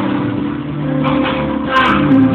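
Live band music: an instrumental passage with held low notes.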